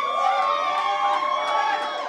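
Audience cheering, with several high voices holding long calls over one another.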